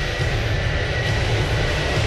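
Film-trailer soundtrack sound design: a steady, heavy low rumbling drone under a faint high held tone, building toward the title card.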